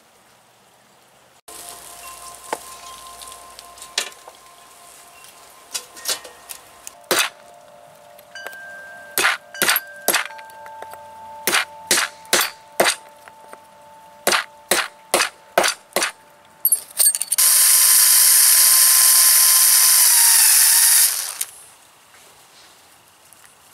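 Hammer blows on a flat steel mending plate lying on a wooden board, sharp metal-on-wood strikes, a few single ones and then quick runs of four to six. Near the end a power drill runs for about four seconds, loudest of all, its pitch dipping just before it stops as it drives a screw through the plate into the window frame.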